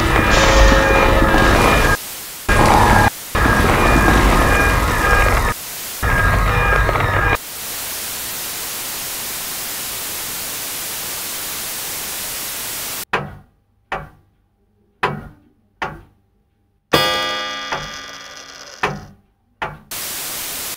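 A staged broadcast breaking up: a loud, dense rumble mixed with steady tones cuts out briefly several times, then gives way about seven seconds in to a steady static hiss. Near the end the static drops out into short bursts of sound separated by silence, the signal cutting in and out.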